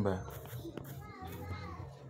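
Faint, high-pitched voices in the background with no clear words.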